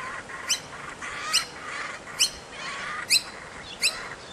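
Young laughing kookaburra begging for food: a short, sharp, rising call repeated five times, about once a second, with fainter calling in between.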